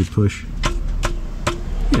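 Socket wrench clicking three times, about half a second apart, each click with a brief metallic ring, as it snugs an oil drain plug back into the pan.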